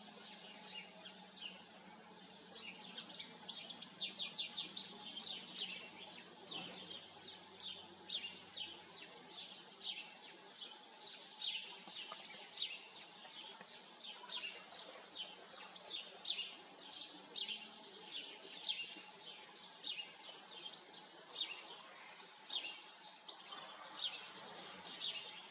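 Bird calls: short, high chirps repeated about two to three times a second, with a faster, louder run about four seconds in.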